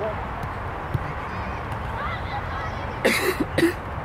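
Two short, loud shouts from young footballers about three seconds in, over steady open-air background noise with faint distant voices.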